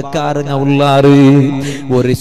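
A man's voice chanting, drawing one syllable out into a long, steady held tone lasting about a second, between shorter chanted phrases.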